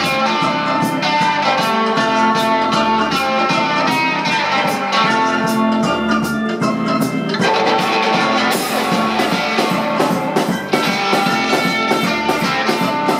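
One-man band playing live garage rock: electric guitar over a steady drum-kit beat, with long held notes above it in the first part. About eight and a half seconds in, the sound turns brighter with a cymbal wash.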